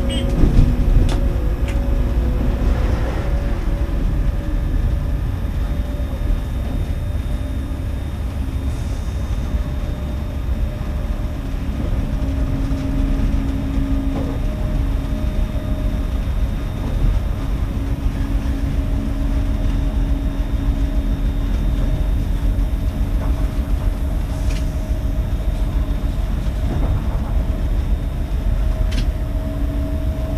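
Passenger train running on electrified track, heard on board: a steady low rumble of wheels on rails with a steady hum in a couple of tones, and a few sharp clicks about a second in and near the end.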